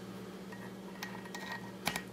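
A few faint clicks of small reloading-press parts being handled, with one sharper click near the end, over a steady low electrical hum.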